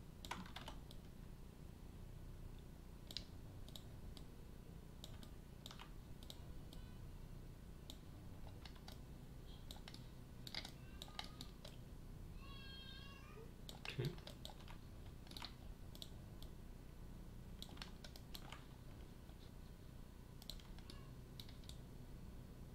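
Sparse, irregular computer keyboard and mouse clicks over a faint low steady hum, the loudest click about two-thirds of the way through.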